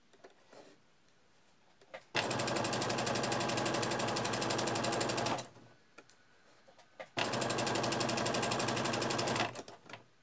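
Domestic electric sewing machine stitching a zip into fabric and lining at a steady fast pace, in two runs of about three and two seconds with a short stop between. A few light clicks come before and between the runs.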